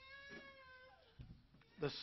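A faint, high-pitched drawn-out cry lasting about a second, followed by a soft knock.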